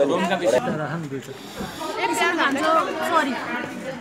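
Several people talking and chatting together at a meal table.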